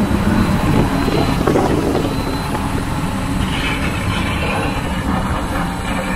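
Hurricane simulator blowing a steady, loud gale of wind across the microphone.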